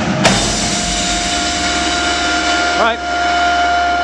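Drumline ensemble's final cutoff hit with crash cymbals, the cymbals' bright ring washing on for a few seconds and slowly fading over a steady held tone. A short rising vocal call comes near the end.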